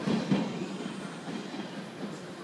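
A 381 series electric limited express train pulling away from the platform. Its running noise fades steadily as it draws off down the track.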